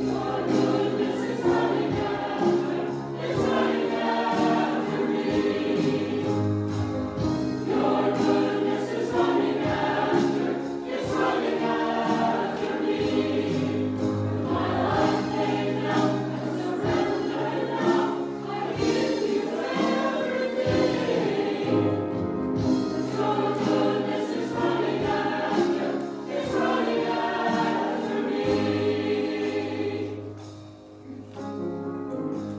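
Small church choir singing a hymn, phrase after phrase, with steady low held notes under the voices.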